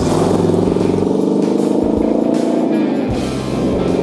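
Cadillac V8 of a Ford Model A coupe hot rod pulling away under power, its exhaust note climbing gently and then dropping back about three seconds in.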